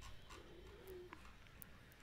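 Near silence: room tone with a few faint clicks.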